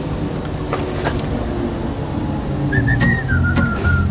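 Soft background music with low held notes, then a whistled tune that comes in about three quarters of the way through, one clear line that glides between a few notes.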